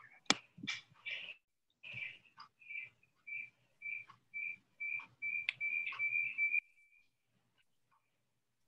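Audio feedback squeaking over a video call: short high squeals at one steady pitch, about three a second, growing longer until they run into a held squeal that cuts off about six and a half seconds in. A sharp click about a third of a second in is the loudest sound, with a few fainter clicks among the squeals.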